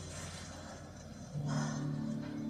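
Film soundtrack from a television in the room: a low rumbling drone, then louder sustained musical notes come in suddenly about one and a half seconds in.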